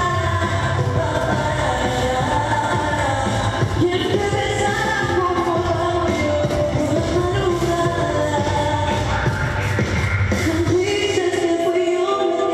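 A woman singing into a handheld microphone over a pop backing track, her voice amplified and holding long, gliding notes.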